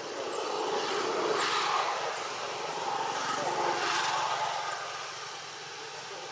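Engine noise of a passing motor vehicle, a steady rush that swells to a peak in the middle and then fades away.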